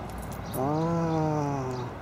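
A man's voice holding one long, level hum of acknowledgment ("mmm") for about a second and a half, starting about half a second in.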